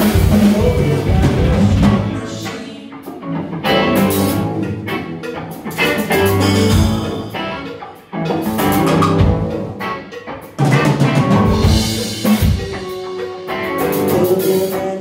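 A live rock band playing: drum kit, electric guitars and bass guitar together. The band drops back twice and comes in again suddenly.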